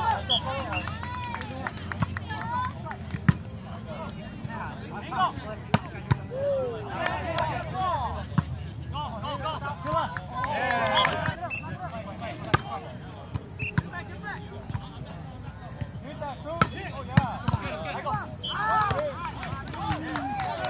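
Volleyball players calling and shouting to each other during a rally on grass, with several sharp slaps of hands striking the volleyball scattered through it.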